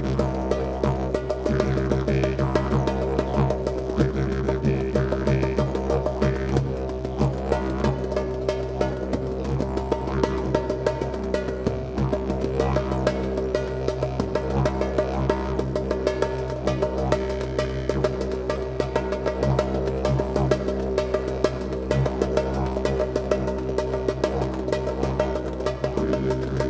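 A Duende didgeridoo, a moytze called The Toad, playing a steady low drone with fast rhythmic pulsing, over quick, dense hand-played drum hits, in an organic psychedelic trance groove.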